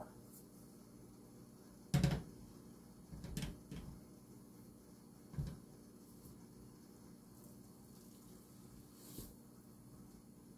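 A glass mixing bowl being handled over a counter while proofed bread dough is turned out of it onto a floured mat: a sharp knock about two seconds in, then a few softer knocks and a dull thump, with quiet room tone between.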